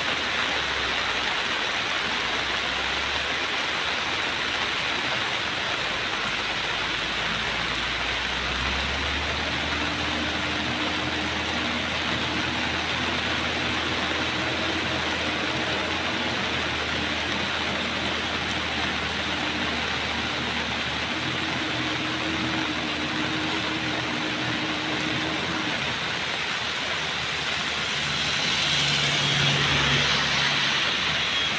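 Heavy rain falling steadily, with a Mitsubishi Fuso truck's diesel engine pulling uphill on the rain-slick road. Its low drone comes in about a third of the way through and fades out near the end.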